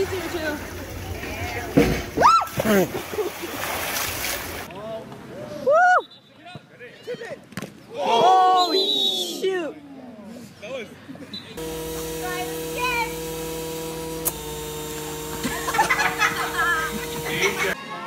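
Voices, then a splash into a swimming pool about four seconds in. Later come voices with falling pitch, and in the last six seconds steady music with long held notes.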